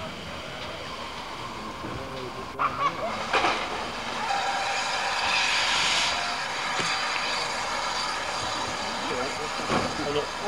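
Steam tank locomotive with steam hissing steadily, strongest around the middle. Voices of bystanders come in about three seconds in and again near the end.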